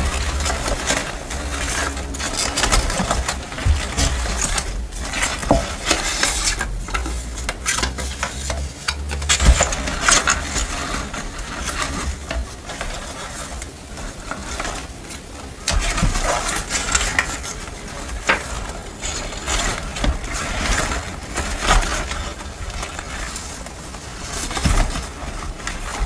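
Hands sifting through a wooden box packed with paper sticker cut-outs and paper scraps: continuous, uneven paper rustling and crinkling.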